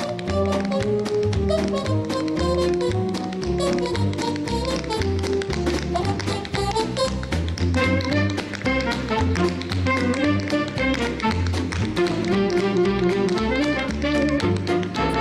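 Tap dancing: a quick run of crisp tap-shoe strikes on a stage floor, over a big-band accompaniment with saxophones.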